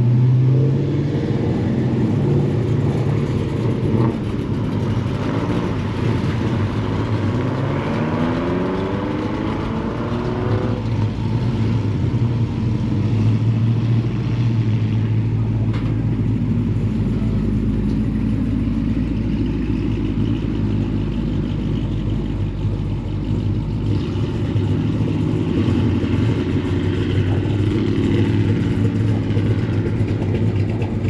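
A motor vehicle engine running, its pitch rising steadily as it revs or accelerates for several seconds, then settling into a steady low drone.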